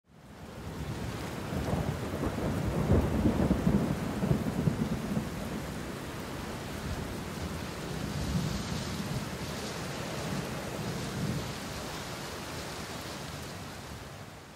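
Thunderstorm: steady heavy rain with rolling thunder, the loudest roll a couple of seconds in and a weaker one later. It fades in at the start and fades out at the end.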